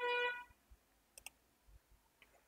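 A short double click about a second in. Before it, a held tone with evenly spaced overtones fades out within the first half second.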